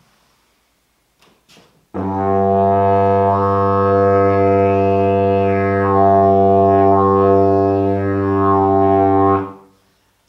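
A short, cheap Indonesian didgeridoo with a very big bell played as a loud, steady, low drone, starting about two seconds in and stopping shortly before the end. Overtones swept with the player's mouth rise and fall within the drone but sound soft, covered and masked by the big bell's own loud sound.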